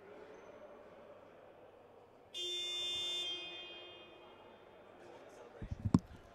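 Basketball scoreboard horn sounding once about two seconds in: a steady buzz that holds for about a second and then fades away, signalling the end of a timeout. A few dull thumps follow near the end.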